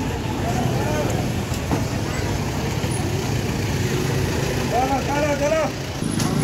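Steady traffic rumble of a busy street, with a voice heard briefly near the end.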